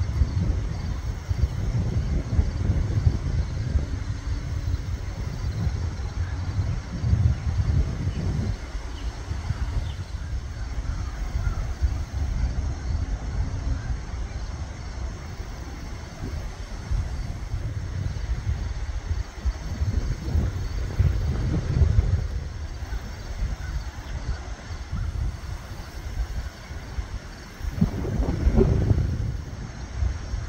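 Wind buffeting the microphone: an uneven low rumble that swells and fades, louder near the end.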